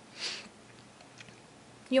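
A woman takes a short breath in, a brief hiss about a quarter of a second in. The rest is quiet room tone, and her voice comes back at the very end.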